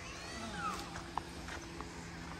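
Faint birds chirping: thin, curving chirps and calls, with two short sharp chirps near the middle and end, over a steady low hum.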